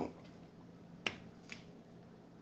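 Two short, sharp clicks about half a second apart; the first, a little over a second in, is the louder.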